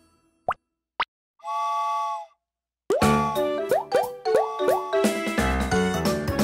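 Two quick rising cartoon pops, then a short steady whistle-like tone about a second and a half in. About three seconds in, bouncy children's song intro music starts.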